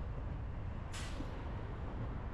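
Steady low rumble of a car driving in city traffic. About a second in comes a short, sharp hiss of compressed air released from the air brakes of a city bus alongside, fading within half a second.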